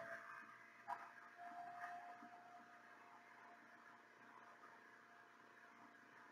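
Near silence: room tone, with one faint click about a second in.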